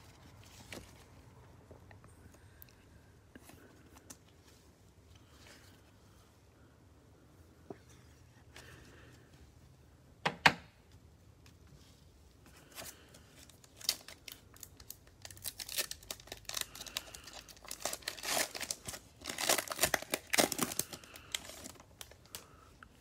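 Plastic wrapper of a trading-card cello pack being torn open and crinkled, a dense crackle through the second half. Before it the sound is mostly quiet with a few light clicks and one sharp knock about ten seconds in.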